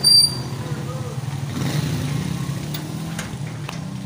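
Motorcycle engine running as a motorbike rides past, a steady low hum, with a short high-pitched beep right at the start.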